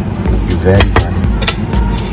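A ladle stirring in a wok, knocking against the pan in about four sharp clicks, over a steady low rumble; a man says "okay".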